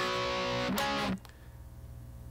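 Electric guitar playing two two-note chords one after the other, each struck once; the second is stopped short about a second in.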